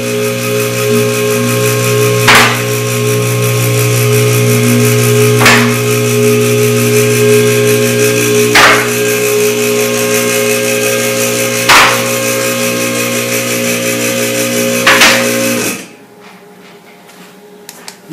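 Car lift's electric hydraulic pump motor running with a steady hum as the car is raised, with a sharp click about every three seconds from the lift's safety locks catching. The motor cuts off near the end.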